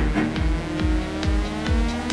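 Progressive psytrance: a steady kick drum about twice a second with a rolling bassline, under a synth sweep rising steadily in pitch.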